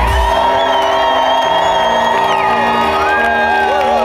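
Live band music at an outdoor concert: the heavy drum-and-bass beat drops out just after the start, leaving sustained held chords. A crowd whoops and cheers over the music, with one long high whoop that slides down a little past halfway.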